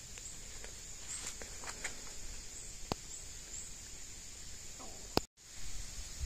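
Faint outdoor background noise with a few light clicks and faint high chirps. A sharper click comes about five seconds in, followed by a short gap of total silence.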